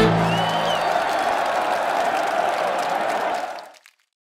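Theatre audience applauding and cheering at the end of a song-and-dance number, with one short high-pitched call rising out of the crowd early on and the last of the music dying away in the first second. The applause fades out near the end.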